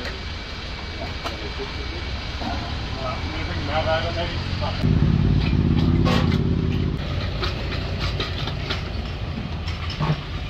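Honda CBR1000RR's inline-four engine idling through an aftermarket carbon slip-on exhaust, revved and held higher for about two seconds midway before dropping back to idle.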